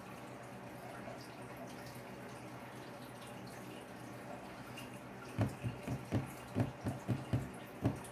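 Faint steady low electrical hum, then from about five seconds in a run of roughly a dozen short soft pops or taps, irregularly spaced.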